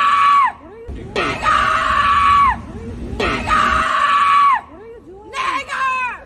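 A woman screaming: three long, high-pitched screams, each held for a second or more and falling off in pitch at the end, followed near the end by shorter yells.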